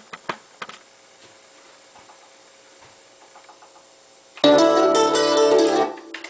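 A few handling clicks, then loud acoustic guitar music starts about four seconds in and cuts off after about a second and a half.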